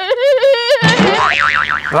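Cartoonish comedy sound effect: a held tone, then, about a second in, a wobbling boing-like warble that swings up and down in pitch.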